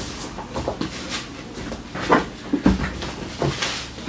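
Books being gathered and handled by hand: a few scattered light knocks and clicks, with one duller thump about two and a half seconds in.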